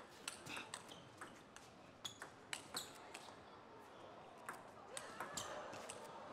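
Table tennis rally: the ball clicking off the rackets and the table in quick, irregular, faint ticks.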